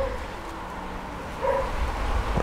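A dog barking faintly in the distance, one short bark about one and a half seconds in, over a low steady outdoor background.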